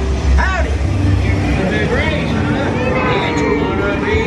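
Radiator Springs Racers ride car running with a steady low rumble, with voices over it.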